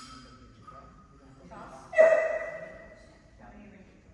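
One sudden, loud vocal call about two seconds in, pitched and held briefly, trailing off over about a second.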